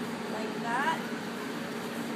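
Steady mechanical hum of commercial kitchen equipment, with a short faint voice between about half a second and one second in.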